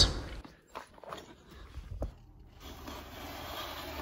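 A few faint, separate footsteps on snow, then a faint steady outdoor hiss.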